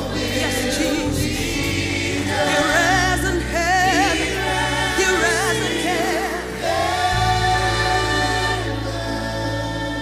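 Gospel worship team of mixed voices singing in harmony with a congregation, the voices wavering with vibrato over a sustained low backing whose chord shifts twice.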